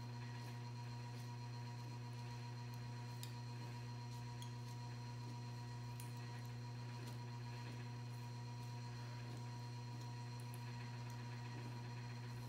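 Steady low electrical hum with a few faint scattered ticks.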